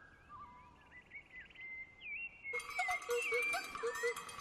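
Jungle bird calls in an animated film soundtrack: a few scattered chirps and whistles, then about two and a half seconds in a dense chorus of many birds sets in along with music and gets louder.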